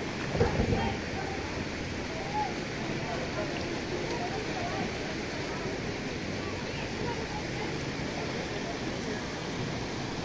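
Steady rush of muddy floodwater flowing through a street, with faint voices in the background and a brief thump about half a second in.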